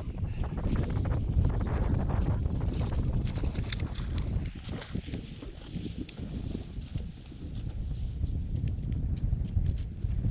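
Wind buffeting the microphone as a low steady rumble, with footsteps crunching in snow as short irregular clicks.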